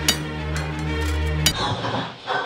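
Music with a sustained low droning chord, struck by two sharp hits about a second and a half apart; it cuts off suddenly at the second hit, leaving a short hiss.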